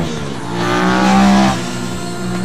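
Sport motorcycle's engine running at high revs, growing louder about half a second in and dropping away abruptly about a second later.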